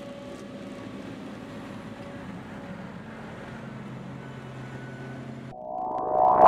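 John Deere self-propelled forage harvester running at a steady hum alongside a tractor while harvesting silage maize. Near the end the machine sound cuts off abruptly and gives way to a rising electronic swoosh.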